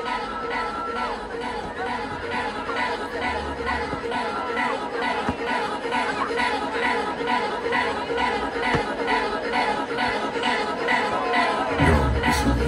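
Electronic dance music from a live DJ set over a festival sound system, in a stripped-back passage: a fast, even beat and a gliding melodic line with the deep bass mostly out, under crowd voices. Heavy bass comes back in right at the end.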